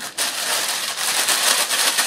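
Thin plastic packaging crinkling and rustling as it is handled and opened, a dense run of small crackles.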